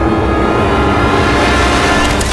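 Dark, suspenseful film score: a loud, low, rumbling drone with sustained tones, swelling as a hiss builds over it.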